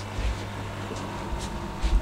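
Steady low hum with a light hiss from the fish room's running equipment, such as the aquarium air pumps feeding the airstones and sponge filters. A few short low thumps from the handheld camera being moved.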